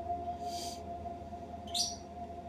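Ethereal Spirit Box ghost-box software playing from a laptop: a steady droning tone with two short hissy swishes, one about half a second in and one near the end.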